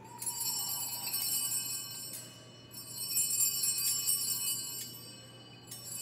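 Altar bells, a cluster of small hand bells, shaken in rings of about two seconds each: two full rings, and a third starting near the end. The ringing marks the elevation of the chalice at the consecration.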